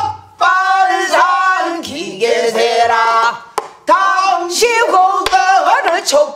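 A woman singing a pansori-style danga in a strained, chesty voice, with long held notes that waver in wide vibrato and bend between pitches. She is accompanied by a couple of sharp strokes on a buk barrel drum in the second half.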